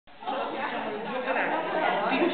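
Background chatter of several voices in a large hall.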